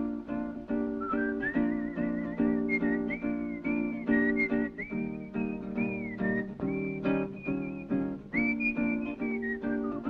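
Rock and roll song intro: a strummed acoustic guitar keeps a steady rhythm while a whistled melody comes in about a second in and carries the tune, wavering on its held notes.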